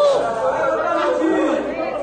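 Several people talking at once in a large room: overlapping, indistinct chatter of voices.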